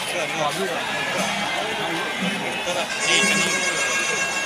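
Crowd voices talking and calling out over one another. About three seconds in, a steady, high reedy wind-instrument tone starts and holds.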